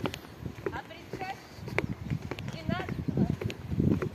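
Footsteps walking on a wooden plank boardwalk: hollow knocks at an even walking pace, a little under two a second, with voices around them.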